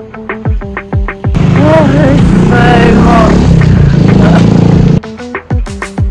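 Upbeat background music with plucked guitar-like notes over a steady kick-drum beat. From about one to five seconds in it gives way to a much louder, denser passage with a voice over a heavy noisy bed, then the beat returns.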